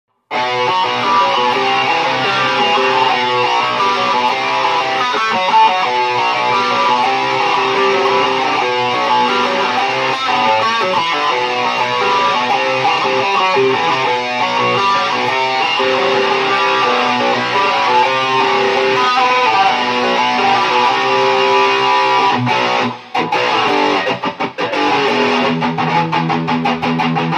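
Amplified electric guitar, a Stratocaster-style solid-body, played continuously as a melodic lead of sustained notes. Near the end the playing breaks off briefly a few times between phrases.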